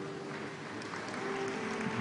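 A congregation applauding, with a few soft held notes of music underneath.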